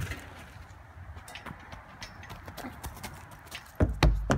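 Scattered light clicks and taps as a child swings hand over hand along playground monkey bars, with one louder thump near the end.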